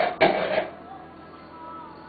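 A person coughs once, briefly, about a quarter second in, over steady background music.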